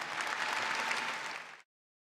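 Large indoor arena audience applauding, cutting off suddenly about one and a half seconds in.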